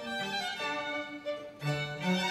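String orchestra of violins and cellos playing a soft, slow passage of held bowed notes that change every half second or so.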